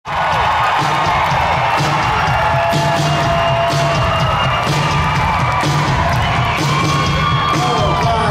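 Live rock band playing a loud vamp with drums keeping a regular beat, while the crowd cheers and whoops over it.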